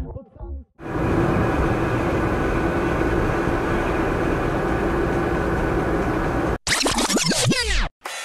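Steady driving noise inside a small car's cabin, engine and tyres together, picked up by a dashcam microphone; it cuts off suddenly near the end, followed by a short burst of gliding tones.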